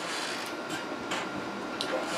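Steady background hiss with a few faint, short clicks.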